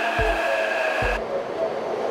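Metro train passing along a platform: a steady whirring rush with a whine in it, whose higher part cuts off abruptly just after a second in. Under it runs background music with a slow, steady kick-drum beat.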